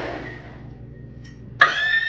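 A woman lets out a sudden high-pitched scream of fright near the end, startled by a cat leaping at her, over a low steady room hum.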